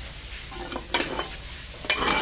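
Close rustling and scraping, with sharp knocks about a second in and again near the end.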